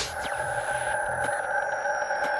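Electronic logo-animation music: a steady synthesized drone of several held tones, with faint high tones sliding slowly downward and a couple of light ticks.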